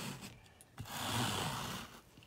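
Uproot Clean Mini pet-hair remover dragged hard across car floor carpet, its edge scraping the fibres as it rakes out embedded dog hair. The end of one stroke is heard just after the start, then a second rasping stroke of about a second starting near the middle.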